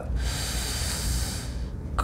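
A man's long, breathy breath lasting about a second and a half, taken while he pauses to think before answering.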